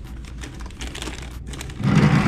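Plastic takeout bag crinkling and rustling as it is pulled out of an insulated delivery bag, in a run of small crackles that grows louder near the end.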